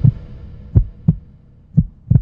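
Heartbeat sound effect from a logo sting: low double thumps, lub-dub, repeating about once a second over the fading tail of a whoosh.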